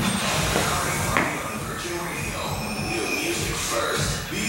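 Background music with vocals.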